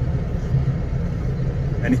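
Tractor engine running steadily under load while pulling a tine weeder (Striegel) across a field, heard from inside the cab as a constant low drone.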